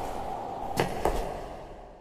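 A few sharp knocks over a steady background hum, the whole fading out to silence over the last second.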